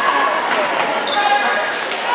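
Badminton racket striking a shuttlecock with a sharp hit, echoing in a gymnasium over steady chatter from the spectators.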